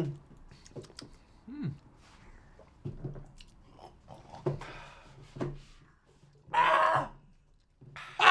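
Mouth sounds of people sucking and chewing lime wedges right after a tequila shot, with small grunts and murmurs. About six and a half seconds in comes a louder breathy vocal exhale lasting about half a second.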